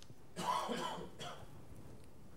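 A person in the room coughs: a longer cough about half a second in, then a short second one.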